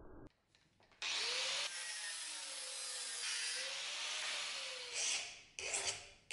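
Abrasive tool working wood with a steady rasping for about four and a half seconds, a faint wavering tone under it, then a few separate short file strokes near the end.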